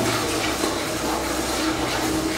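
A wooden spoon stirring dry flour in a steel bowl, making a steady, even swishing.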